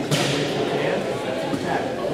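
A single sharp smack about a tenth of a second in, ringing off the gym walls as it fades, over the background chatter of voices in the hall.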